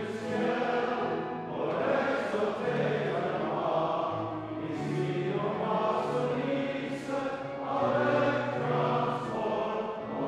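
A congregation singing a closing hymn together in long, held notes over a low accompaniment.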